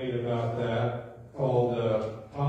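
A man's voice in a slow, chant-like delivery: two long phrases held on steady pitches, with a short break about a second in.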